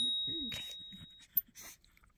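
A small bell rings once, its clear high tone fading away over about a second and a half. A brief faint vocal sound comes just after the strike.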